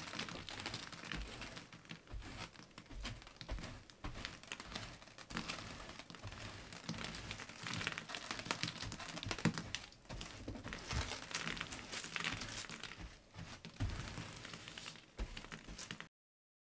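Loose crushed glass scratching and tinkling as a soft bristle brush sweeps it off a cured resin surface, a continuous irregular patter of many small ticks as the pieces skitter and drop onto the table.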